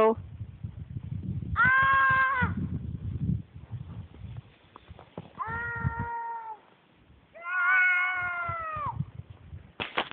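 Three long, high-pitched, held vocal calls, each about one to two seconds. The first comes over a low rumbling noise, and the last is the longest and loudest.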